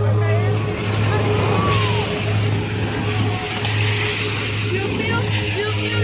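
Street ambience: a steady wash of traffic noise over a constant low hum, with faint voices mixed in.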